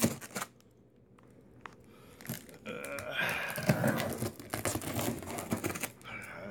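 Cardboard box being torn open and handled by hand: tearing, rustling and crinkling with short knocks. After a knock at the start it is quiet, and from about two seconds in it becomes busy and continuous.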